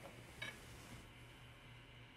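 Near silence: room tone with a faint steady low hum and one faint click about half a second in.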